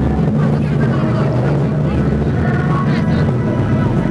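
Live concert sound through a camera microphone: a loud, steady low bass from the PA, with voices from the crowd or the stage over it.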